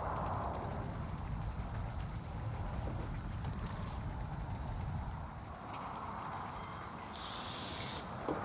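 Wind rumbling on the microphone across open water, with a soft hiss of water and paddling underneath; a brief high chirp near the end.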